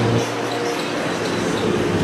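A passing road vehicle: a steady rush of engine and tyre noise.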